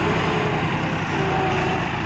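Diesel tractor engine running steadily.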